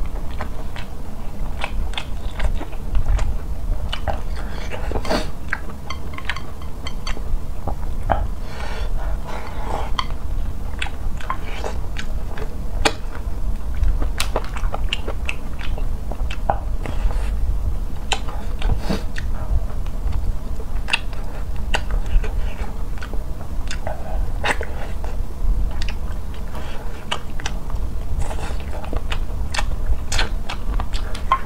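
Close-miked chewing and biting of a mouthful of rice and eggplant: wet mouth sounds with many short clicks all through. Wooden chopsticks tap now and then against a ceramic bowl.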